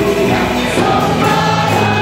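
A Christian song sung by a group of women into microphones with live band accompaniment, with tambourines jingling in the mix.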